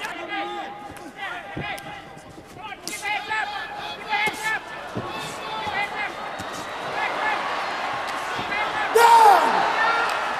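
A man's fight commentary over a kickboxing bout, with a few sharp thuds of strikes landing in the ring. A loud burst of voice rises about nine seconds in.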